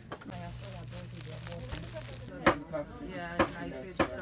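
Indistinct background voices, with a steady low hum for about the first half and two sharp knocks, one about two and a half seconds in and one about a second later.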